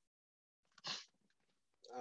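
Near silence, broken by one short, faint puff of noise about a second in, with a man's voice starting right at the end.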